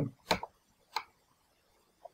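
Two sharp computer mouse clicks, about two-thirds of a second apart, made while selecting and dragging an instrument in a music program.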